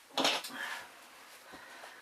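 Small metal hardware being handled during the refit of a mountain bike's rocker-linkage bolts: a short clatter and clink about a quarter second in, then faint handling noise.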